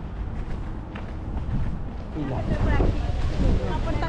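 Wind buffeting the microphone, a steady low rumble, with faint voices coming in about halfway through.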